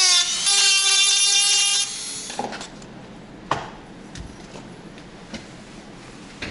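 Small electric screwdriver running with a steady whine as it backs screws out of a headlight projector lens unit. It cuts off about two seconds in, followed by a few light clicks and knocks as the parts are handled.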